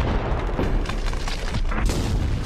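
Loud sustained rumbling with booms and sharp cracks, a cartoon film's sound effect of a blast or heaving rock, with the score underneath. It breaks in suddenly just before and keeps up throughout.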